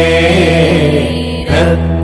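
A Tamil Christian hymn about Jesus' blood washing away sin, sung in long held notes over steady instrumental accompaniment, with a short break about one and a half seconds in.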